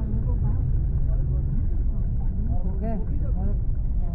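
Steady low rumble of a car's engine and tyres heard from inside the cabin while driving, with a person's voice briefly over it a little before the end.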